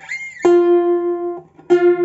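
Bandurria plucked with a pick: a single note on the newly fitted fourth-course guitar string rings for about a second, then is plucked again near the end. The string is being brought into unison with its pair while it settles after restringing.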